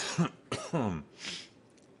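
A man coughing several times in quick succession in the first second and a half, followed by a short breath.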